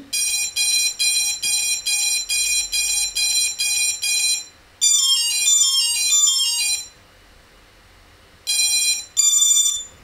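Brushless motors of a quadcopter sounding ESC calibration tones, all four in unison: a run of identical beeps about three a second, then a quick falling run of notes, then two short beeps near the end, the second higher. The tones signal that the ESC throttle calibration has completed successfully.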